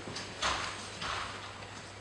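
Two short knocks and scrapes of stage set pieces being moved in a blackout scene change, about half a second and a second in, over a steady low hum.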